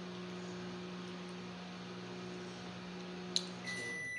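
Steady low electrical hum in a small room, cutting off just before the end, with a single sharp click shortly before it stops.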